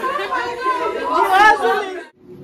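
Women's voices chattering and exclaiming, with one voice rising loud and high about one and a half seconds in before cutting off.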